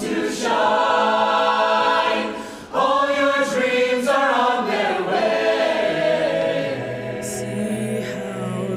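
Youth barbershop chorus singing a cappella in close harmony, holding sustained chords. The sound dips briefly about two and a half seconds in, then the full chorus comes back in strongly.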